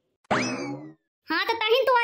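A short cartoon sound effect, a boing-like twang that sweeps quickly up in pitch and glides back down, lasting under a second. About a second later a pitched-up cartoon voice begins speaking.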